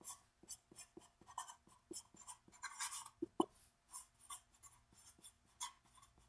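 Felt-tip marker writing on paper: a quick run of short, faint strokes as letters are written out, with two slightly louder strokes about three and a half seconds in.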